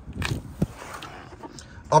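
Quiet rustling and a light knock as a person climbs into a car's driver's seat, a foot settling into the carpeted footwell.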